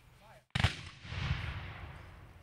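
A volley from a memorial gun salute: one sharp crack about half a second in, followed by a rolling rumble that fades away over the next second and a half.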